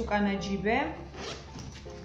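Metal zipper on a fabric diaper backpack being pulled open, one pull lasting about a second.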